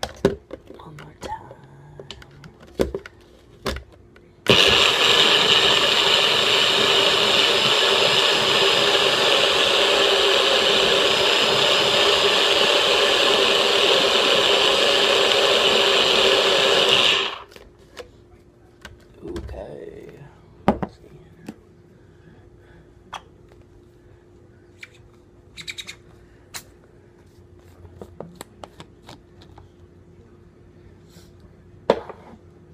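Single-serve bullet-style blender running for about thirteen seconds, blending ice, almond milk and protein powder into a thick shake; the motor starts abruptly about four seconds in and cuts off sharply. Clicks and knocks of the cup being seated come before it, and plastic clatter of the cup being handled and unscrewed follows.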